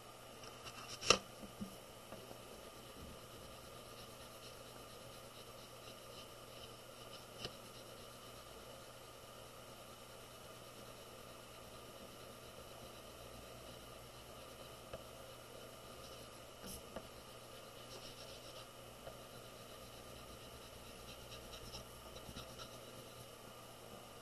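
Chalk pastel stick scratching faintly across drawing paper as colour is laid on, with a sharp click about a second in.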